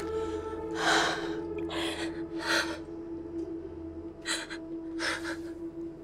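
A person breathing in short, heavy gasps, five breaths in all, over a held, drone-like note of film score music.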